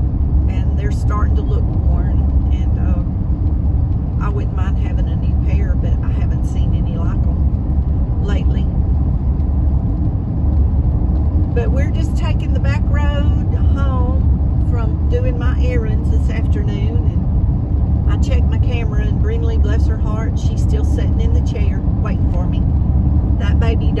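Steady low rumble of a car driving at road speed, heard from inside the cabin, with a voice talking on and off over it.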